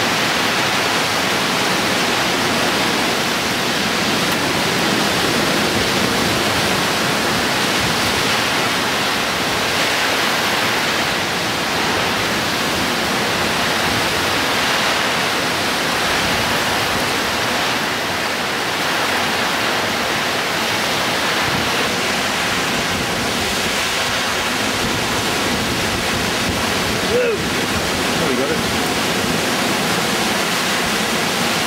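Tropical cyclone wind and heavy rain: a loud, steady rushing noise as gusts tear through trees and rain pours down.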